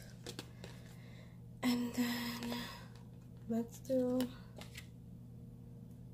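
A woman's voice humming a few short held notes without words, about two and four seconds in. Faint clicks of paper and stickers being handled sit under a steady low background hum.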